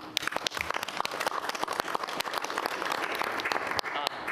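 An audience applauding, with many hands clapping in a dense patter that starts at once and stops just before the end.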